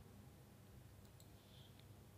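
Near silence, with a few faint computer-mouse clicks in the second half.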